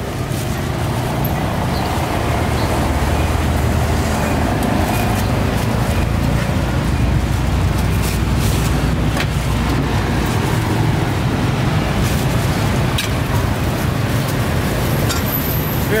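Steady rumble of road traffic running close by, with faint voices in the background and a few light clicks.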